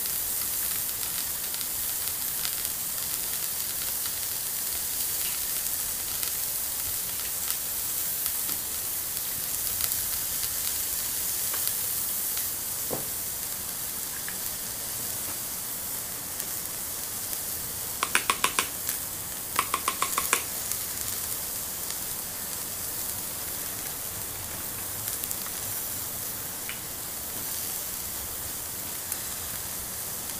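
Steady sizzling, frying sound from a toy cooking stove whose pot gives off mist, with two short runs of rapid clicks about two-thirds of the way through.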